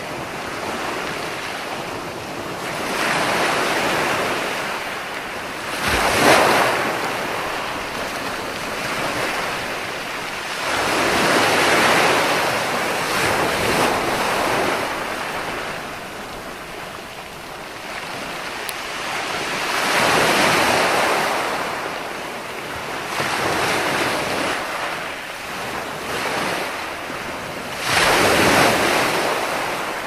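Sea waves breaking and washing up a sandy beach, the surf rising and falling in swells every few seconds, with the sharpest, loudest break about six seconds in and another near the end.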